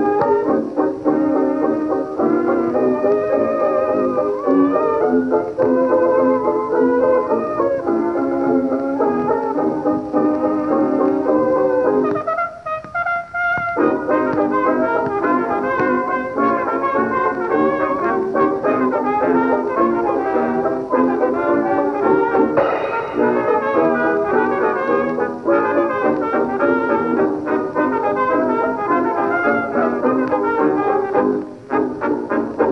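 1922 acoustic-era dance band recording led by trumpet and trombone, played from a 78 rpm shellac disc on a gramophone; the sound is narrow, with little bass or treble. About twelve seconds in, the lower instruments drop out for a second or so, leaving a short high phrase, before the full band returns.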